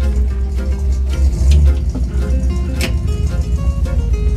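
Background music with a heavy, steady bass line.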